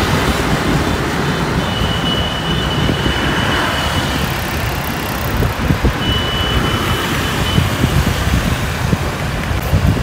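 Road noise from riding a motorbike through city traffic: wind buffeting the microphone over the rumble of the bike and of surrounding scooters and cars. A thin high tone comes and goes twice, for about two seconds each time.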